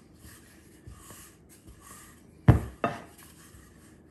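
A wooden rolling pin rolling pie dough on a floured countertop, with faint rubbing. About two and a half seconds in come two sharp knocks a third of a second apart, as the pin hits the counter.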